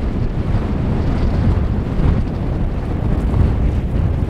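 Strong wind buffeting the microphone: a loud, steady low rumble.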